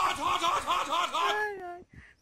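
A person laughing in quick repeated syllables, about five a second, trailing off in a long falling note about a second and a half in.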